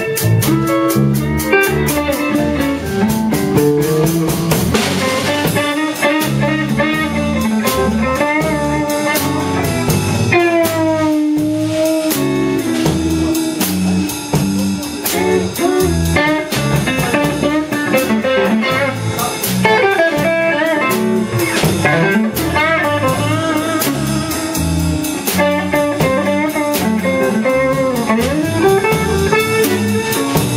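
A live blues band playing: electric guitars over bass and a drum kit keeping a steady beat, with a lead guitar line full of bent notes.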